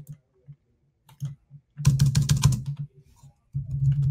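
Typing on a computer keyboard: a few scattered keystrokes, then a quick run of key clicks about two seconds in.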